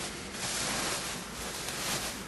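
Rustling and shuffling of the hot box seat's insulated filling as the pot is pressed down into its hollow and settled, an even, hissy noise without clear strokes.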